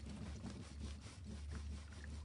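Clothes iron being pushed and rubbed over fabric, a faint scuffing rub, over a steady low hum.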